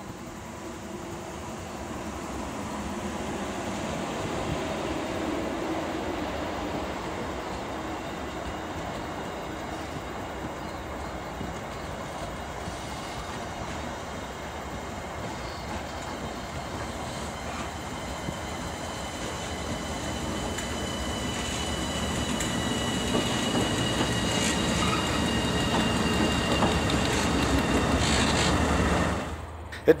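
Diesel-hauled passenger train passing at speed, carriage wheels rolling on the rails with a thin high whine that falls slightly in pitch. It grows louder and deeper in the last third as the two diesel locomotives at the rear pass, and cuts off about a second before the end.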